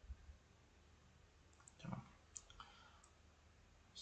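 Near silence: room tone with a few faint computer-mouse clicks, the clearest a little after the middle.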